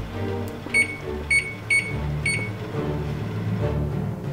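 Frigidaire Gallery Series oven control panel beeping four times: short, high electronic beeps about half a second apart, over background music.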